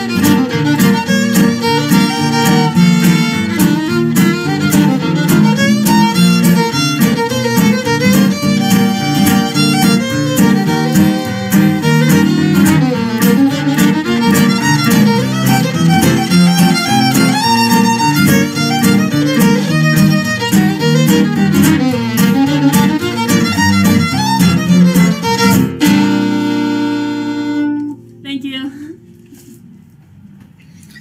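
Fiddle playing a lively fiddle tune over strummed acoustic guitar accompaniment, ending on a long held final note and chord near the end.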